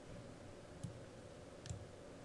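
Two faint computer mouse clicks, one a little under a second in and another near the end, over quiet room tone.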